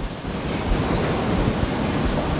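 Steady rushing noise with an uneven low rumble, like wind or handling noise on a microphone, in a pause between a questioner's words.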